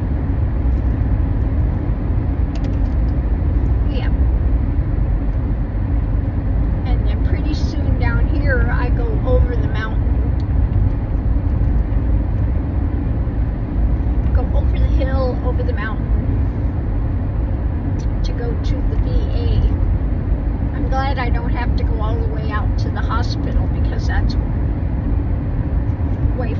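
Steady low road and tyre rumble inside the cabin of a 2012 Toyota hybrid car driving along, with short bits of a voice now and then.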